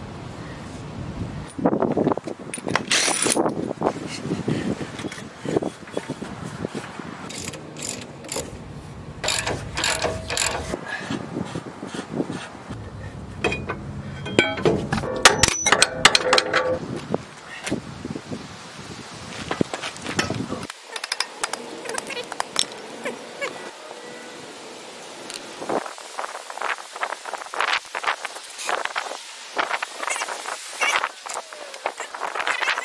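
Hand tools working on steel truck suspension parts: irregular bursts of metallic clicks, clanks and scraping as bolts are worked loose.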